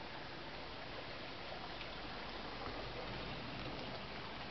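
Steady, faint background hiss with no distinct events.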